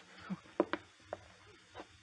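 A handful of faint knocks and thumps, about five spread over two seconds, as of a scuffle over a gun.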